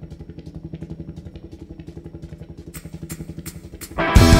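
Low, pitched instrumental drone from a band on stage, pulsing fast and evenly like a tremolo or sequenced synth. Thin ticking clicks join in over the last second or so.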